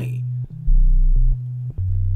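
Background music: a low synthesizer bass line stepping between sustained notes about every half second.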